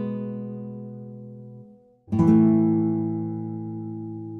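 Background acoustic guitar music: a strummed chord rings out and fades away, then a new chord is struck about two seconds in and left ringing.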